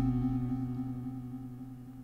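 Synthesizer tone from a Bitwig Grid patch: one steady pitched note with several overtones, fading out evenly as an echo tail. The Grid's voice-lifetime setting keeps it sounding after the envelope has closed.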